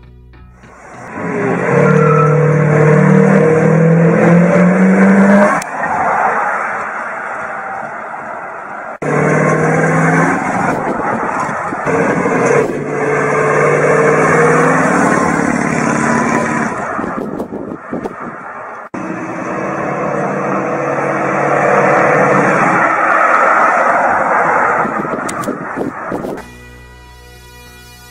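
1974 Dodge Monaco sedan's V8 engine accelerating as the car drives by, its pitch rising as it speeds up, in several takes that cut off abruptly.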